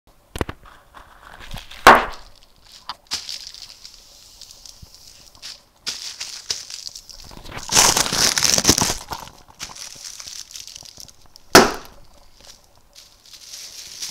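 Inflated plastic air-cushion packing being squeezed and burst: several sharp pops, the loudest about two seconds in and another near twelve seconds, with plastic crinkling and hissing in between.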